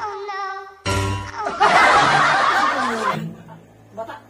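Comedy sound effects: a short musical jingle, then a burst of canned laughter from about a second and a half in that dies away just after three seconds.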